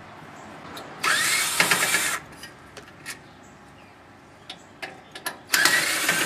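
Cordless drill/driver backing screws out of a tanning bed's aluminum frame in two bursts of about a second each. The motor's whine rises as it spins up at the start of each burst, and a few faint clicks fall between the bursts.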